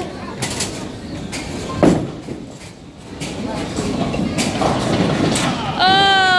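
Bowling ball released onto the wooden lane with a heavy thump about two seconds in, then rolling down the lane with a rumble that grows louder. Scattered knocks and clatter from the bowling alley around it.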